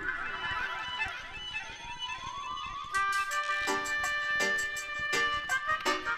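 A reggae record playing from vinyl through the sound system. It opens on a hazy intro with a slowly rising tone; about three seconds in, the tune drops in with a steady beat under long held melody notes.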